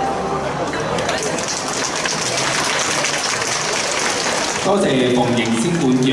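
Audience applauding as the music's last notes die away, for about four seconds; near the end a man starts speaking.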